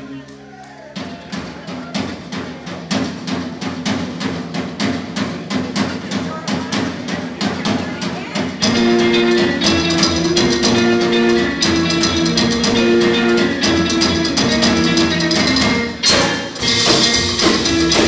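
Live rockabilly band. After a short lull, a steady clicking beat of about three strokes a second plays alone, then upright bass, electric guitar and drums come in together about halfway through. There is a brief break near the end, and then the full band plays loudly again.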